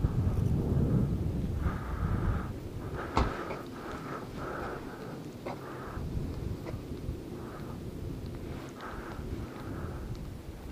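Low rumble of wind buffeting the microphone, strongest in the first few seconds and fading, with a single sharp click about three seconds in.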